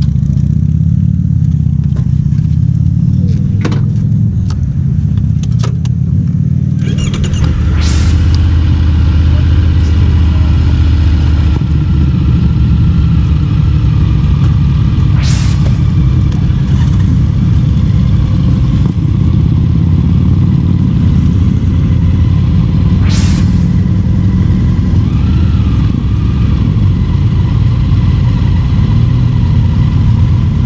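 Motorcycle engines idling together in a line of stopped bikes, a steady low rumble that thickens and grows louder about seven seconds in. Three sharp clicks stand out, spaced about seven to eight seconds apart.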